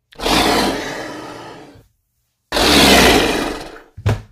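Two loud monster-style roars, each about a second and a half long, starting at full strength and fading away.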